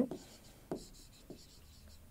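Faint strokes of a pen or marker writing on a board, a few short scratches about half a second apart.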